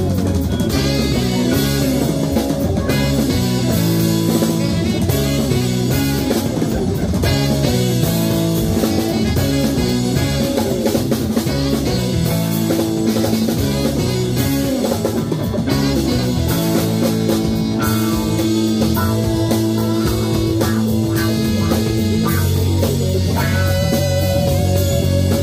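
Live band playing an instrumental rock jam: electric guitars, keyboard and drum kit, loud and steady, with no singing.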